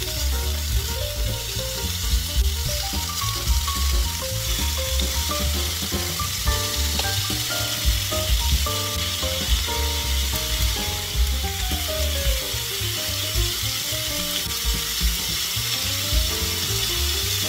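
Pork belly slices sizzling in a hot nonstick frying pan as more pieces are laid in with tongs. Background music with a melody and a steady beat plays over the sizzle.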